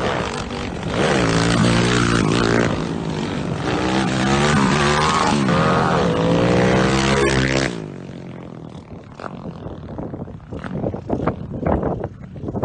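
Stroked 273 cc single-cylinder four-stroke engine of a Honda CG Titan motorcycle running loud under hard acceleration, its revs rising again and again through the gears as it comes up close. Just before eight seconds it drops away suddenly to a much fainter, uneven noise.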